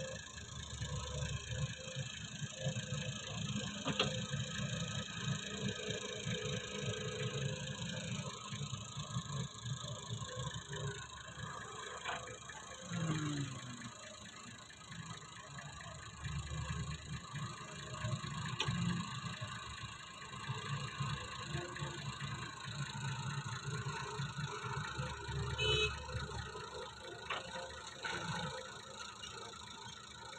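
Excavator's diesel engine and hydraulics working steadily as it scoops sand and tips it into a tractor trolley, with a few sharp knocks.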